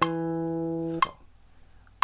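Guitar playing the closing note of a short G major scale phrase: E at the second fret of the fourth (D) string. The note is held for about a second, then damped with a short click, and the rest is quiet.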